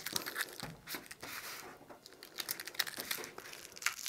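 A sheet of cut adhesive vinyl on its paper backing, crinkling and rustling irregularly as it is handled and peeled.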